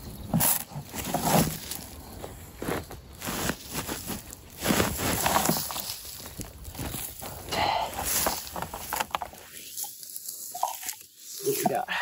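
Soil and dried potato vines pouring out of a fabric grow bag into a plastic barrel, with the bag rustling and dirt crunching in irregular bursts. Near the end come quieter sounds of hands digging through the loose soil.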